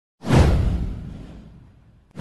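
Whoosh sound effect with a deep boom underneath, starting about a fifth of a second in with a sweep falling in pitch and fading away over about a second and a half.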